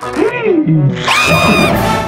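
Cartoon voice sounds over background music: wordless gliding grunts in the first second, then a high, held shriek, ending in a low thump near the end.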